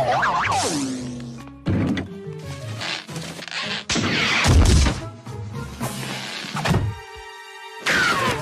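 Cartoon music score with slapstick sound effects: a falling, sliding tone at the start, then several sudden thuds and knocks, and a held steady note near the end.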